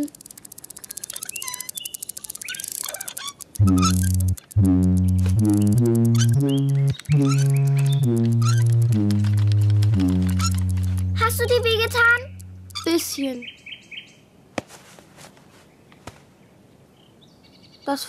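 Cartoon soundtrack: a fast run of ticks, then a low tune of held notes stepping up and down for about six seconds, then a few high chirping warbles about eleven seconds in, and quieter scattered clicks after that.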